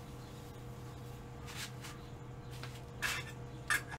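Cloth rubbed by hand over a wooden platter, with short scuffs and handling knocks, the two loudest near the end, over a steady low hum.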